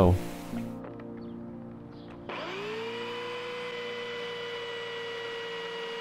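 Electric belt sander switched on about two seconds in: its motor whine rises quickly as it spins up, then settles into a steady high running tone with belt noise.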